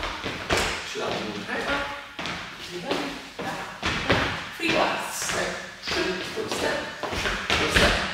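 Dance shoes stepping and tapping on a wooden floor in the quick rhythm of swing-dance steps and triple steps, a steady run of short thuds every fraction of a second.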